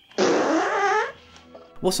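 A film's comic fart sound effect: one loud fart with a wavering pitch, lasting under a second and ending about halfway through.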